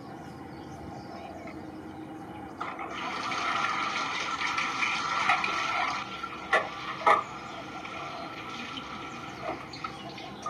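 Birds calling and chattering over steady outdoor background noise. A louder, busier stretch of chattering mixed with rushing noise runs from about three to six seconds in. It is followed by two sharp, loud chirps about half a second apart, then scattered softer calls.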